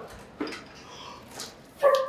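Strained, forceful breathing from a man lifting a heavy barbell in a Romanian deadlift. It ends in a short, loud, high-pitched grunt as he drives up to standing.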